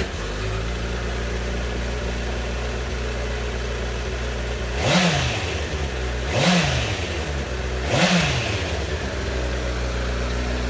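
Honda CBR1000RR Fireblade's inline-four engine idling just after start-up, then revved in three short throttle blips about a second and a half apart, each rising and falling straight back to idle.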